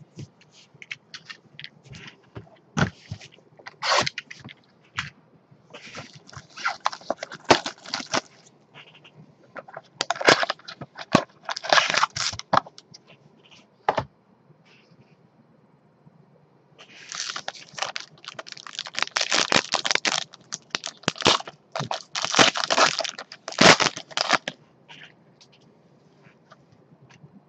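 Gloved hands unwrapping and opening a sealed trading-card box: plastic wrap crinkling and cardboard scraping in irregular bursts, with sharp clicks and taps between them. The crinkling is busiest in a long stretch in the last third.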